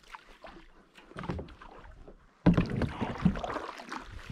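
Water splashing and knocks around a plastic sit-on-top fishing kayak while a hooked fish pulls on the rod, quiet at first and then suddenly much louder about two and a half seconds in.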